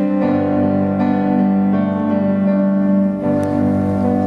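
Kawai ES7 digital piano playing a slow run of sustained chords.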